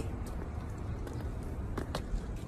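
Steady low outdoor background rumble with no voices, and one short sharp tap near the end.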